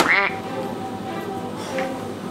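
A sharp click, then a brief squawk-like comic sound effect, followed by music with steady held notes.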